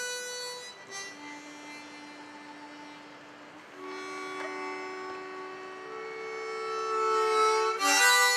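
Harmonica played in cupped hands: slow, long held notes, fading to a soft low note about a second in, then rising to louder held double notes that swell toward the end.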